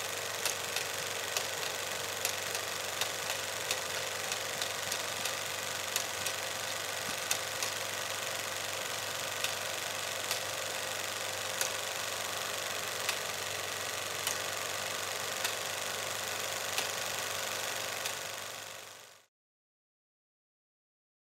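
Old-film sound effect: a steady hiss and low hum like a running film projector, with scattered crackle pops about once or twice a second, fading out near the end.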